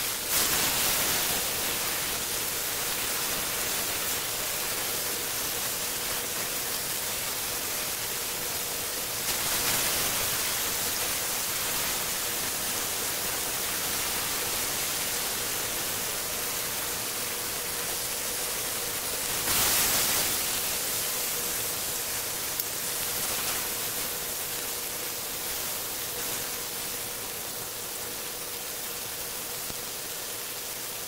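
Beef steaks sizzling in a hot grill pan with butter and garlic: a steady frying hiss, swelling louder briefly a few times, with a faint steady hum underneath.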